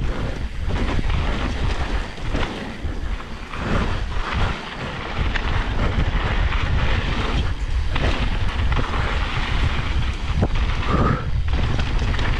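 Mountain bike riding fast down a dirt singletrack: steady wind rumble on the microphone mixed with tyre roar over dirt and the bike rattling and knocking over bumps. There is a brief squeak near the end.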